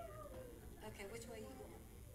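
Faint voices of young children, with one child's drawn-out, falling whine at the start followed by short bits of chatter.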